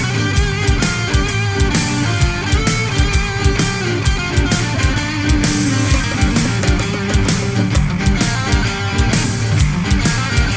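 Heavy metal music playing: electric guitar over a steady, driving beat.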